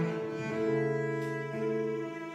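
Cello playing long, sustained bowed notes that change pitch about twice, in a duet with an acoustic guitar.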